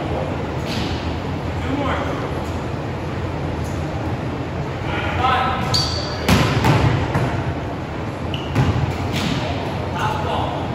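A hand smacks a volleyball in a spike about six seconds in. The ball then strikes the hardwood gym floor and bounces, with two more thuds near the end. A short shouted call comes just before the hit.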